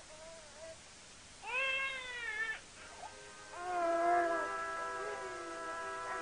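A brief wailing cry, rising then falling, about a second and a half in, followed from about halfway by soft film-score music with long held notes.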